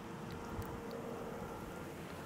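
Faint steady low background rumble with a thin hum over it, and no distinct sound event.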